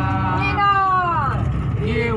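Several men's voices calling out in a group chant inside a bus, one long call sliding down in pitch about half a second in, over the steady low rumble of the bus.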